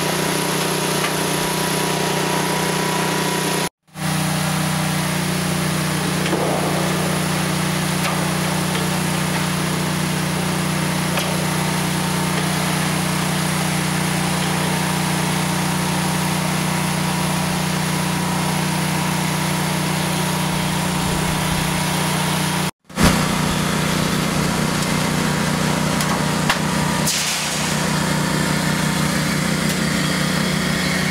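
Portable snap-lock metal roofing panel roll former running steadily, its motor and forming rollers humming as metal coil stock feeds through. The sound drops out briefly twice.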